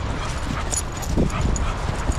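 A Shar Pei dog giving a short whimper about a second in, over the crunch of paws and footsteps in snow.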